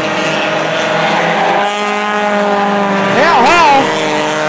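Engines of several front-wheel-drive compact race cars running at steady pitch around a short oval track. Near the end a wavering note rises and falls.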